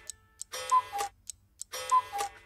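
Clock sound effect striking the hour: two chimes about a second apart, each a higher note stepping down to a lower one, with light ticks between them.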